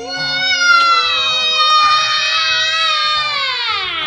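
A woman and two children holding one long, loud, drawn-out blown-kiss 'mwaaah' together, the pitch sliding down at the end.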